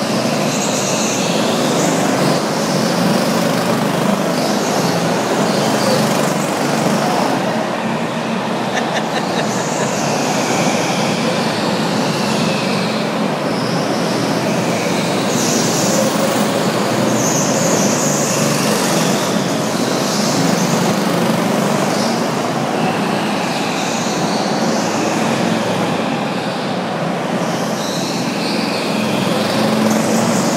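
Go-karts lapping a track: engines running steadily, with repeated high-pitched tyre squeals as they corner on the smooth concrete.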